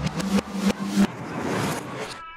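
Outro sound effects: a few sharp hits in the first second, then a rising rush of noise that cuts off suddenly right at the end.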